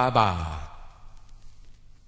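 A man's voice, played from a vinyl record, draws out a wordless 'ba' that slides down in pitch and stops about half a second in. Faint hiss follows for the rest of the time.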